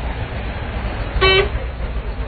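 A vehicle horn gives one short toot a little over a second in, over a steady low rumble.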